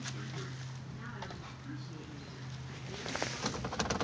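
Honda D15 four-cylinder engine idling with a steady low hum, heard from inside the car; the engine is skipping and down on power from a bad wiring harness. A few clicks come near the end.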